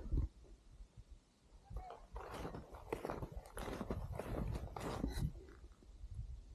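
Footsteps in snow: a faint, irregular run of steps starting about two seconds in.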